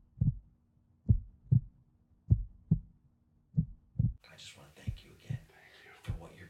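Heartbeat sound effect: deep paired thumps (lub-dub) about half a second apart, repeating slowly at roughly one beat every 1.2 seconds. About four seconds in, a faint hiss comes in and the thumps grow fainter.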